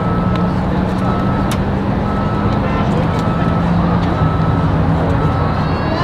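Marching band music: a sustained low chord held under a short high note that repeats about once a second, with a brief rising figure near the end.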